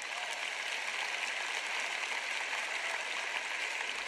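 Large arena audience applauding steadily, a dense even sound of many hands clapping.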